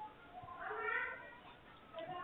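A single drawn-out, meow-like cry lasting about a second, wavering up and down in pitch and loudest in the middle.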